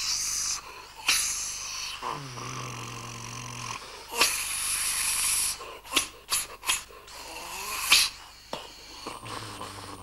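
Comic sound effects of a wish-granting machine at work as it makes a pipe. There are bursts of hissing and puffing, a tone that slides down and then holds low, and a quick run of short puffs about six seconds in.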